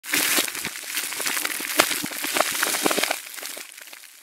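A crackling, crunching sound effect of dense sharp clicks that fades away near the end.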